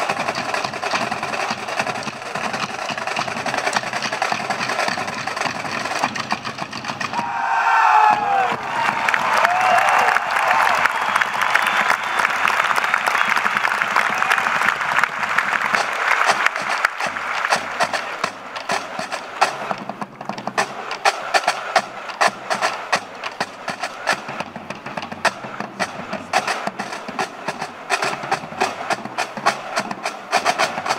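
A marching drum corps playing snare and bass drums in fast, crisp, tightly drilled rhythms. About eight seconds in, a stadium crowd breaks into loud cheering and whoops over the drumming for several seconds before the drums carry on alone.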